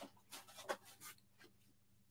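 Near silence, with a few faint rustles and a brief soft click as small items are handled.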